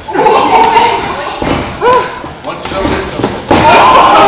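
Boxing-glove punches landing with a few dull thuds during a sparring exchange, with voices shouting over them.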